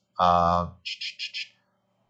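A man's voice holds one short sound, followed by four quick high hissing bursts in a row, then quiet.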